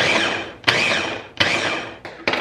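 Ninja food chopper's motor pulsed three times in quick succession, each burst fading out. Its blades are whizzing flour and chilled butter into crumbs for pastry.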